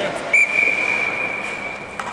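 Ice hockey referee's whistle blown in one long, steady blast starting about a third of a second in and slowly fading, the signal that stops play.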